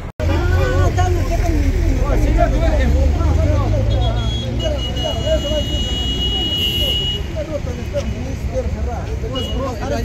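Street sound: a vehicle engine's low, steady rumble under several people talking in the background, with a steady high-pitched tone from about four to seven seconds in.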